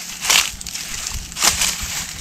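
Dry fallen leaves and straw crunching under a person's feet and hands, with two louder crunches about a second apart.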